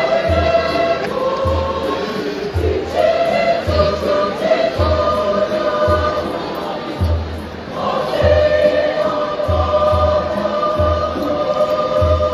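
A large mixed choir singing a hymn in harmony, with a steady low drum beat about once a second underneath.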